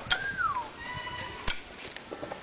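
A child's high-pitched cry sliding down in pitch, then a faint held note, with two sharp clicks, one at the start and one about one and a half seconds in.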